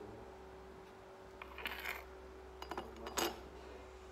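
Ceramic clinks and knocks as a teacup is set down on the floor and a porcelain teapot is picked up: a short cluster of clinks a little over one and a half seconds in, a few light ticks, then the loudest clink about three seconds in.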